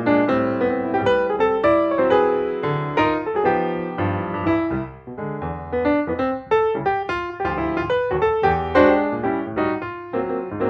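Background piano music: a steady stream of quickly played notes, briefly softer about halfway through.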